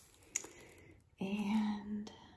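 A woman's hummed, thoughtful "hmm", one level note held for just under a second near the end, after a single light click of the clear plastic stamp sheet being handled.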